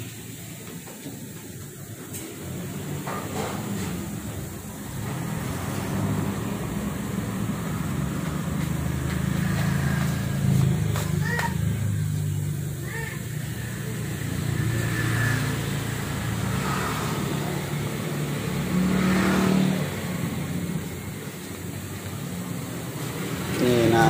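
A low engine rumble that grows louder a few seconds in and holds steady, with faint voices in the background and a few light clicks.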